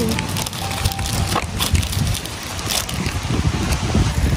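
Wind buffeting the microphone outdoors: an uneven low rumble in gusts, with scattered small rustles and clicks.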